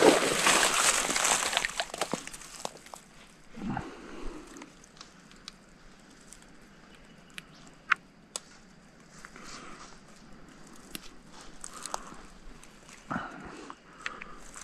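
A hooked largemouth bass splashing at the pond surface as it is reeled to the bank, loudest in the first two seconds or so. After that it is much quieter, with scattered small clicks and rustles as the fish is handled and unhooked.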